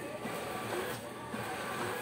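HP PageWide Pro 477 printer running a continuous draft-mode print job: a steady mechanical whir of the paper feed as sheets are pulled in and ejected at speed.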